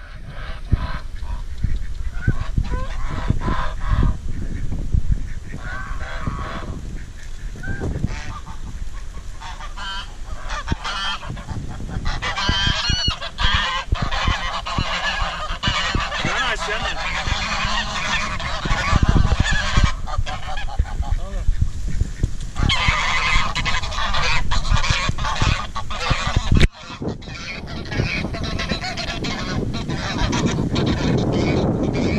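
A flock of domestic geese honking over and over as they crowd round to be fed, the calls thickening into a dense chorus in the second half.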